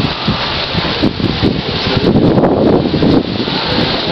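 Wind buffeting the camera's microphone: a rough, uneven noise that grows louder about two seconds in.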